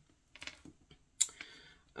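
A few faint clicks and taps of fingernails on cards, with one sharper click just after a second in.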